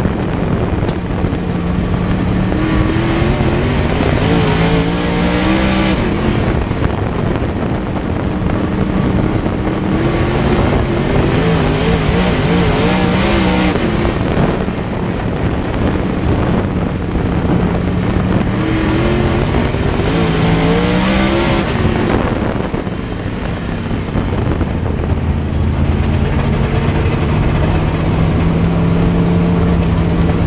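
Dirt super late model's V8 racing engine heard from inside the car, climbing in pitch down each straight and dropping as it lifts for the turns, in laps about eight seconds apart. After about 24 seconds it settles into a steadier, lower drone.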